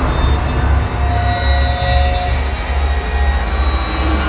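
Dark cinematic drone: a deep, steady low rumble with a few faint sustained high tones over it.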